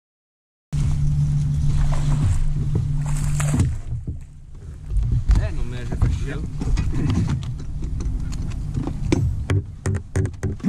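After a moment of silence, a steady low motor hum starts and stops about three seconds later. It is followed by scattered handling noise and a few sharp knocks near the end.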